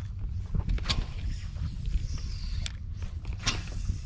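Steady low rumble of wind on the microphone, with a few sharp clicks from a fishing rod and reel being handled.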